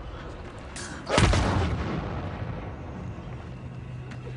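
One heavy blow of a barbed-wire-wrapped baseball bat striking a man, about a second in: a loud, sudden, deep hit with a short tail. A low steady drone comes in near the end.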